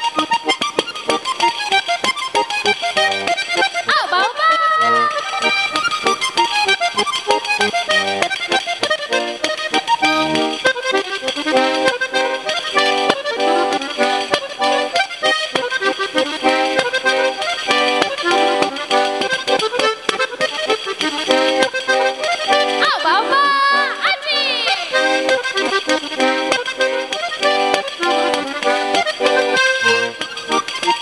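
Basque trikitixa (diatonic button accordion) playing a fast traditional tune of quick repeated notes, accompanied by a pandero frame tambourine. Twice a voice glides briefly up and down over the music, about four seconds in and again near twenty-three seconds.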